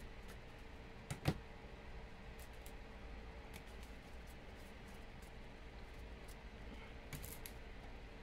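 Faint handling noise from trading cards in plastic holders being sorted: a quick double click about a second in, scattered light ticks, and a few more clicks near the end, over a low steady room hum.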